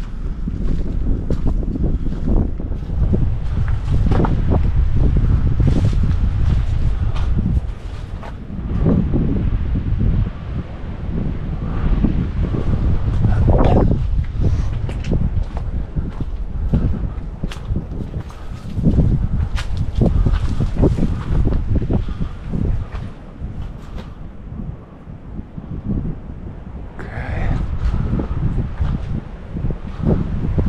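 Wind buffeting the microphone in uneven gusts, with irregular footsteps and rustling underfoot.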